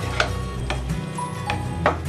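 Background music with sustained bass notes. Over it, four sharp, irregular clicks of a plastic spatula striking the pan as spiced fried soy chunks are stirred, the last the loudest.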